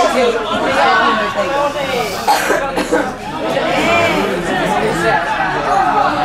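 People's voices talking and calling over one another, with no single voice carrying clearly.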